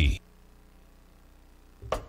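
The last word of a promo voice-over cuts off, leaving a second and a half of very quiet broadcast gap with a faint low hum. Just before the end a sudden swell of sound starts the transition into the show's guitar theme music.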